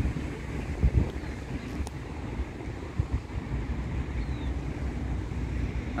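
Wind buffeting the microphone outdoors: an uneven low rumble, with a couple of soft bumps about one second and three seconds in.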